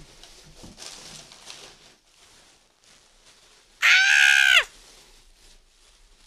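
A woman's high-pitched squeal of delight, one loud cry under a second long about four seconds in, holding its pitch and then dropping away at the end.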